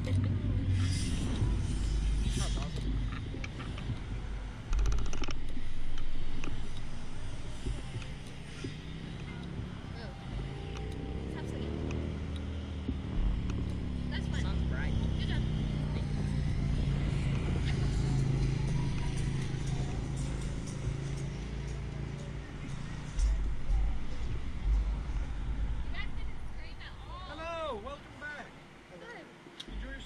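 Wind buffeting the microphone of a camera mounted on a Slingshot reverse-bungee ride capsule as it swings on its cables, heard as a low rumble that settles into a steady hum through the middle. Riders' voices break in now and then.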